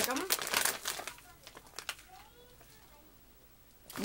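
A plastic snack bag crinkling as it is picked up and handled, a dense run of crackles in the first second and a half that thins out and fades away.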